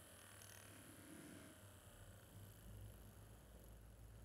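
Near silence, with the faint whir of a small DC motor spinning a CD pinwheel, slowly falling in pitch as it winds down with its power cut.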